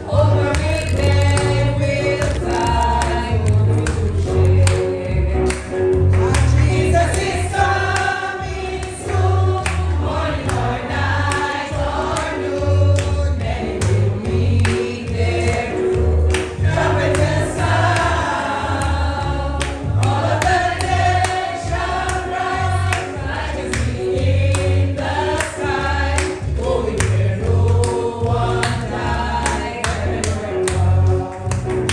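A choir singing a gospel song over a pulsing bass line and a steady beat.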